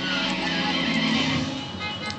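Television show soundtrack: music with a held low chord and a bright high wash, fading out near the end.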